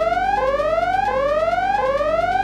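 An electronic alarm-like sound effect: a clean tone that glides up in pitch for about two thirds of a second, drops back and glides up again, over and over, then cuts off suddenly.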